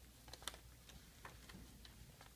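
Near silence, with a few faint light clicks as a handmade paper book is handled and its pages moved.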